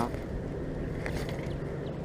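A steady low engine drone, with light rustle and a few faint clicks about a second in.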